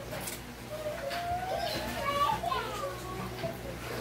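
A young child's high voice, sliding up and down in pitch, from about a second in until near the end.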